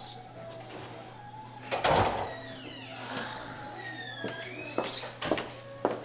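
Music playing as an interior sliding door is rolled open, with one loud bump about two seconds in.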